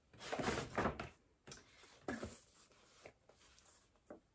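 A large brown paper shopping bag rustling and crinkling as a hand rummages inside it. It is loudest in the first second, followed by a few shorter crinkles.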